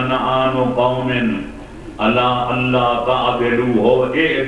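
A man's voice chanting or reciting in long, held, melodic tones through a microphone and PA, with a short break about halfway through.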